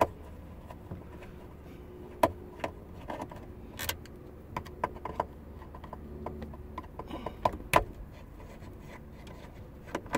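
Phillips screwdriver backing the screws out of a plastic soft-top latch: irregular small clicks and ticks of the tip working in the screw heads, with a few sharper clicks, over a faint steady low hum.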